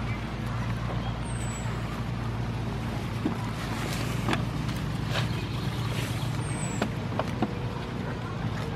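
Goats browsing leafy branches at close range, with scattered crisp snaps and clicks of leaves being torn off and chewed. A steady low hum runs underneath, and two brief high falling whistles sound, about a second in and again past six seconds.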